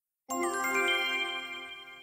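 A bright bell-like chime sound effect: several ringing tones struck together about a third of a second in, then slowly dying away.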